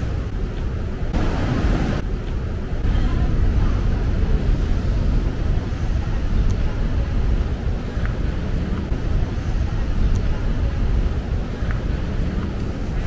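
Outdoor ambience with a steady, fluctuating low rumble, louder for a moment about a second in, and a few faint clicks.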